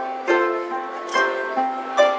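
Three small Irish harps playing a tune together, plucked notes ringing on over one another, with firm plucks about a third of a second in and again just after a second in.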